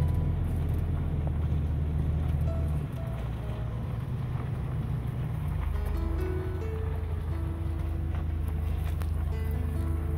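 Steady low hum of a vehicle's engine and road noise heard from inside the cab while driving slowly, with a simple melody of background music over it.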